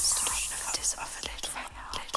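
Electronic dance music from a DJ set dropping into a break: the kick drum and bass fade out at the start, leaving a quieter stretch of high hiss, scattered ticks and a faint voice.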